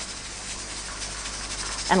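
Steady hiss of steam escaping from a pressure canner's weighted regulator (jiggler) while the canner is still at pressure.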